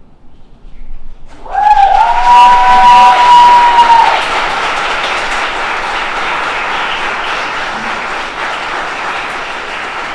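Audience applause breaking out about a second in, loudest over the next few seconds with held cheers on top, then settling into steady clapping.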